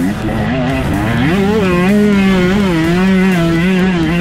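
KTM SX 125 two-stroke single-cylinder engine running hard at high revs. The pitch dips briefly at the start and again about a second in, then climbs back and holds.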